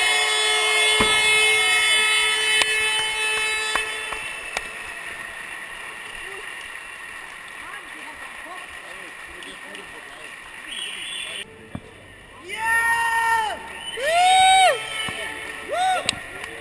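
Arena sound as a fight's winner is declared: a long, steady held note fills the first four seconds. The hall then drops to a quieter din, and two loud drawn-out calls, rising and falling in pitch, come near the end.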